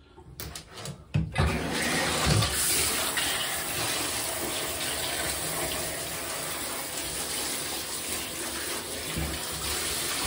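Handheld shower head spraying water onto an Apache 4800 hard plastic case in a bathtub: a few short clicks, then a steady hiss of spray starts about a second in and holds. The case is being spray-tested for leaks at its seams and valve.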